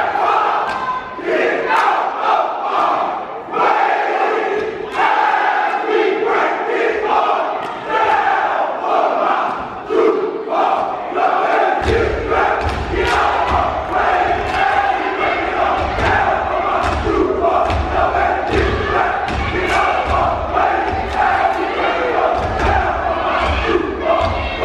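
Step team stomping and clapping in rhythm while shouting in unison, over a cheering audience. Deep low thuds join the beat about halfway through.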